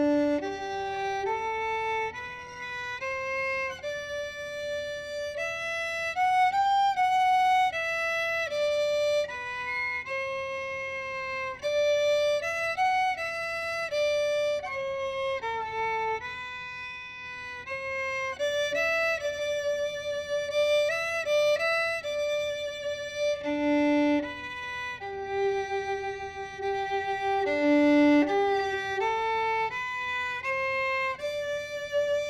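Solo violin playing a melody exercise in third position on the D and A strings, one bowed note at a time, each note held about half a second to a second.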